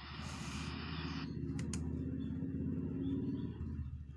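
A low, steady machine-like hum in the room, with a faint hiss that stops about a second in and two short clicks about a second and a half in.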